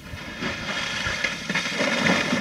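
Part of an iceberg's ice arch collapsing into the sea: a rushing, splashing noise of falling ice and water with a few sharp knocks, building from about half a second in and loudest near the end.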